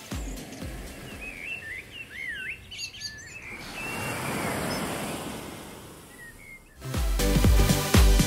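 Birds chirping with short swooping calls, then a wave breaking and washing up the sand, swelling and dying away over about three seconds.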